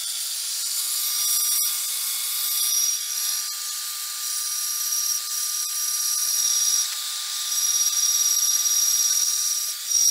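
Vertical metal-cutting bandsaw running steadily and cutting through a piece of metal. A high, ringing squeal from the blade in the cut swells and fades several times as the work is fed in, and is longest and loudest in the last couple of seconds.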